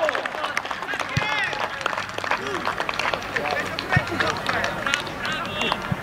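Players' voices calling out on an outdoor football pitch just after a goal, in short scattered shouts, with a few sharp claps.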